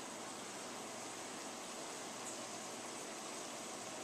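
Steady, even background hiss with no distinct event in it.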